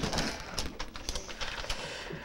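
A hand rummaging among paper slips inside a cardboard box and drawing one out: a run of faint, irregular rustles and small clicks.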